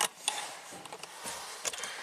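A few faint, short clicks, roughly a second apart, over quiet truck-cab room noise.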